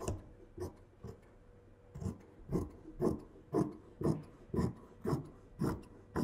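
Fabric scissors snipping through fabric, a few scattered snips at first, then a steady run of about two snips a second.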